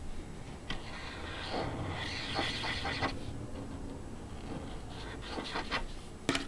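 Tip of a ZIG glue pen rubbing over a cardstock tag, strongest for about two seconds early on, with light clicks and taps as the pen and paper tags are handled near the end.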